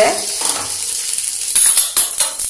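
Uttapam batter sizzling in a lightly oiled non-stick frying pan as a wooden spatula presses the vegetable topping into it, with a few light clicks near the end.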